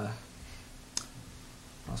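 A single short, sharp click about a second in, during a pause in a man's speech. His voice trails off at the start and picks up again near the end.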